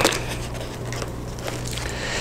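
Faint rustling and handling of a hardbound Bible as its ribbon marker is pulled out from between the pages, with a small click at the start and a soft tick about a second and a half in. A steady low hum runs underneath.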